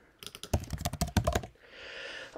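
Typing on a computer keyboard: a quick run of key clicks lasting about a second, stopping a little past halfway.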